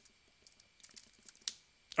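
Keystrokes on a computer keyboard as a short command is typed and entered: a few scattered light clicks, with a louder one about a second and a half in and another at the very end.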